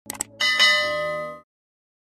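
Notification-bell sound effect of a subscribe-button animation: two quick mouse clicks, then a bright bell ding with several ringing tones that lasts about a second and cuts off suddenly.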